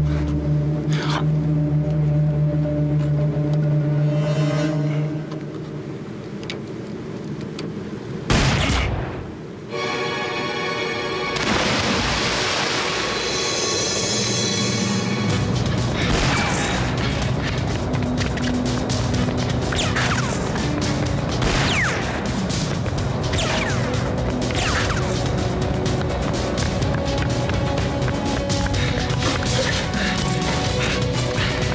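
Film score music with a sharp boom about eight seconds in, followed by a denser stretch of music and effects with many short hits.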